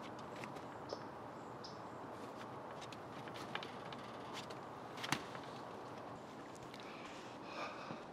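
Quiet outdoor background hiss with scattered light clicks and taps from a rabbit doe moving about in her hay-bedded wire hutch; one sharper click about five seconds in.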